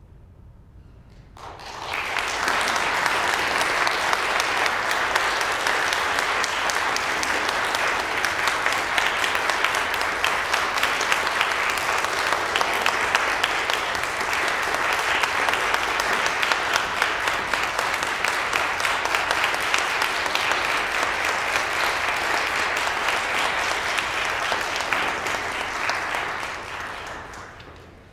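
Audience applauding. The clapping starts about a second and a half in, holds steady, and dies away near the end.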